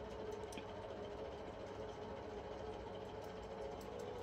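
Steady low background hum, machine-like, with a few faint ticks and no speech.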